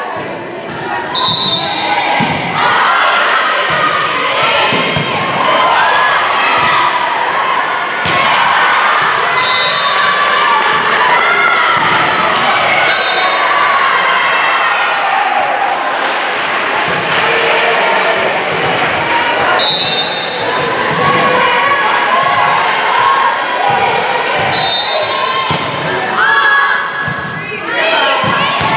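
Indoor volleyball play echoing in a gym hall: repeated sharp hits of the ball, brief high sneaker squeaks on the hardwood court, and players' and spectators' voices calling and cheering throughout.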